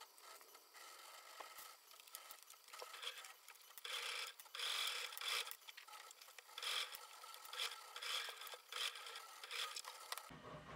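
Muslin fabric rustling and rubbing as it is handled and folded by hand, in irregular bursts, loudest about four to five and a half seconds in.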